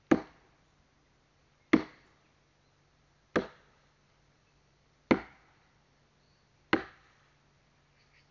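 Firewood being chopped by hand: five sharp chopping strikes into wood, evenly spaced about a second and a half apart.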